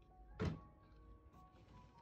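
A single thunk from a white dresser drawer being pulled open, about half a second in, over soft background music.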